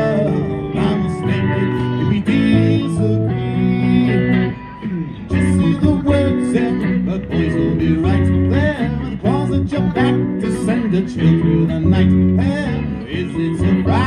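Live rock band playing an instrumental passage on electric guitars, bass guitar and keyboard, with lead guitar notes bending up and down in pitch. The sound dips briefly about four and a half seconds in, then the playing picks up again.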